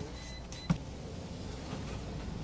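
Grocery checkout counter: a faint, thin high beep from the checkout equipment, then a single sharp knock a little after, like a carton set down on the counter, over the steady low hum of the shop.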